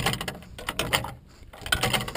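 Irregular metallic clicks and knocks from the wig wag signal's swing-arm and contact mechanism being handled by hand.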